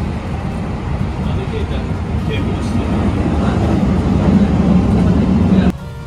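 Running noise of a Hankyu train heard from inside the passenger car: a steady low rumble that grows louder toward the end and then cuts off suddenly.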